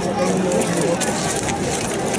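Commotion of a staged medieval street fight: several voices shouting over a crowd, with a few knocks and clatter from armoured reenactors' staves and swords.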